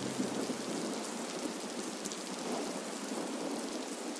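Steady rain: an even soft hiss with scattered faint drop ticks, as the last of the organ music dies away at the very start.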